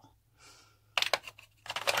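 Clicks and taps of a small makeup container being handled and closed: a quick cluster of sharp clicks about a second in, and a few more near the end.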